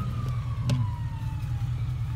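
A steady low hum with a faint distant siren wailing, its pitch slowly falling, and a single sharp click about three-quarters of a second in.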